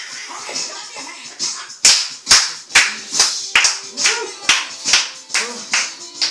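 Steady rhythmic hand clapping, a little over two claps a second, starting about two seconds in, over dance music.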